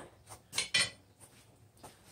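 A few light metal clinks as a steel vise is loosened by its sliding bar handle to release a forged steel scroll from its jaws, with a cluster of clinks about half a second in and a single one near the end.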